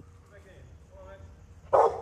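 A dog barks once, short and loud, near the end, over faint background sounds.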